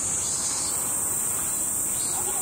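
Insect chorus: a steady, high-pitched drone that does not let up.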